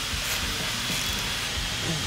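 Steady background hiss of a workshop, with a faint, steady high whine running through it.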